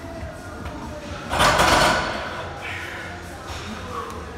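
A loaded barbell with iron plates clanking into a squat rack's hooks about a second in, a sudden loud metal crash that rings briefly and dies away.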